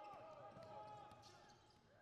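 Near silence with faint court sounds: a basketball being dribbled on a hardwood floor.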